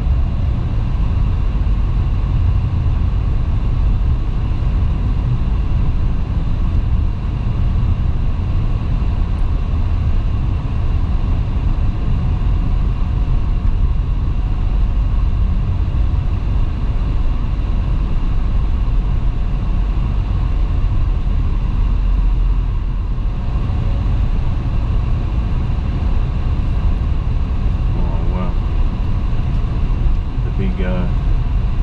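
Steady road and engine noise inside a moving car's cabin: a constant low rumble of tyres and engine at cruising speed, even in level throughout.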